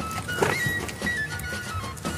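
Background music: a high melody of single held notes stepping down in pitch, with one faint knock shortly after the start.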